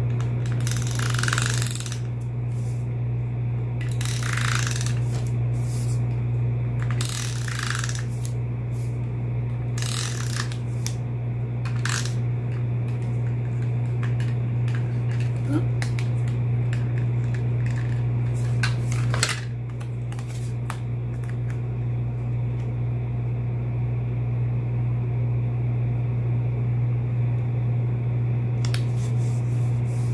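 Snail tape-runner adhesive dispenser rolled across card stock in about six short strokes, each a brief ratcheting rasp, mostly in the first twenty seconds, over a steady low hum.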